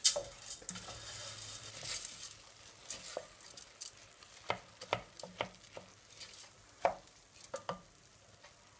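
Wooden spoon stirring risotto rice around a stainless steel pot, with irregular scrapes and knocks against the pan, and a faint sizzle as the rice cooks in the reduced wine and onions before any stock goes in. The knocks come more often in the second half.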